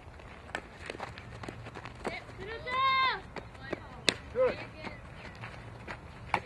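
Softball ground-ball fielding drill: a few sharp knocks of the ball off the bat and into the glove. A loud drawn-out shout comes about halfway through, and a shorter call follows later.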